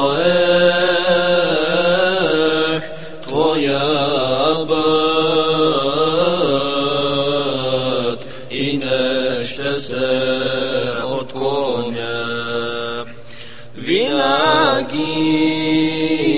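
Ilahi singing: a long, wavering melismatic vocal line without clear words, held over a steady low vocal drone, with short breaths near 3 s and about 13 s in.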